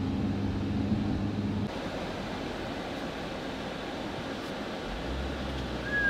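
Car cabin noise while driving: a steady low engine hum drops away about two seconds in, leaving a softer even air and road noise, and a low rumble comes back near the end.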